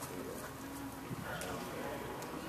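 Indistinct low voices of people talking in the background, with a light click about one and a half seconds in.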